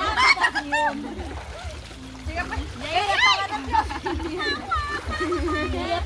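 Shallow river water splashing as people sit in it washing mud off themselves, with women's voices calling out over it.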